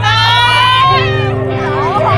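Live rock band playing, heard from within the audience. A high held note slides slightly upward for about the first second, then the bass and held chords carry on.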